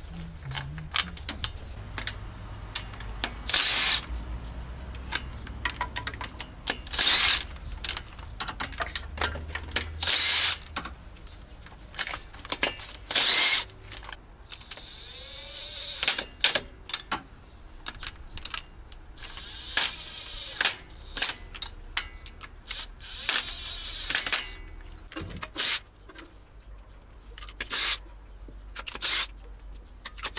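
Hand tools working on a GAZ-66 truck's V8 engine during a spark-plug change: many sharp metallic clicks and clinks. They are broken by several louder half-second bursts of tool noise, four of them about three seconds apart and then longer ones later on.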